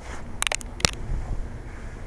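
Snow crunching: a quick cluster of sharp crunches about half a second in and a single one just under a second in, over a low wind rumble on the microphone.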